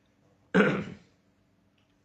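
A man clears his throat once, a short sudden burst about half a second in.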